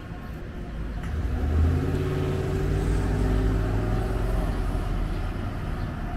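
A car driving past close by, its engine getting louder about a second in and its note rising a little as it accelerates, over steady street traffic.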